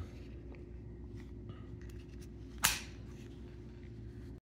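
Camera handling noise in a quiet room with a steady low hum: faint small clicks and one short, sharp knock about two and a half seconds in as the camera is positioned.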